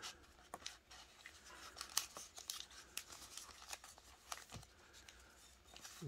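Foil-wrapped trading-card packs handled and shuffled against each other, giving faint scattered crinkles and light ticks.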